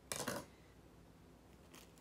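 Scissors make one short, sharp sound just after the start, lasting about a third of a second, then only faint room tone.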